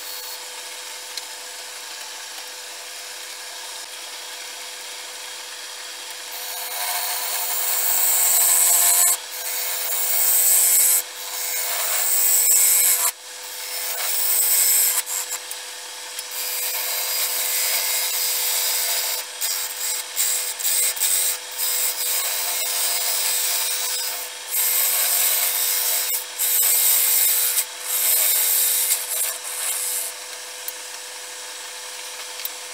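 Wood lathe running steadily with a motor hum as a wooden blank spins; from about six seconds in, a turning gouge cuts into the spinning wood in a series of loud strokes broken by short pauses.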